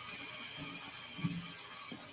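A pause in the talk: faint room tone with a faint steady high hum, and a brief soft low sound a little over a second in.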